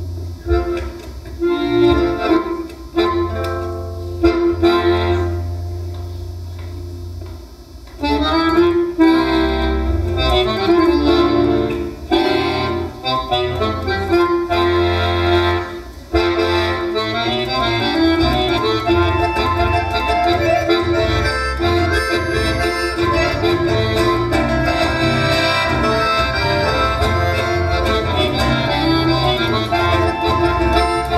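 Piano accordion playing a tune with guitar accompaniment. It starts softly in separate phrases with short gaps, swells into fuller playing about eight seconds in, and settles into a steady, sustained sound from about sixteen seconds.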